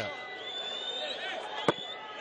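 Stadium crowd ambience from a football broadcast: a steady low hubbub with faint voices, and a single sharp knock about three-quarters of the way through.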